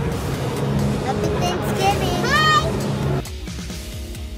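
Loud indoor amusement-park din of music, steady low hums and voices, with a high voice rising and falling briefly about two and a half seconds in. A little after three seconds it changes abruptly to quieter music with a steady beat.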